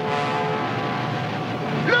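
Cartoon soundtrack: a held chord of several steady, horn-like tones over a rushing noise. The lowest tone drops out about half a second in.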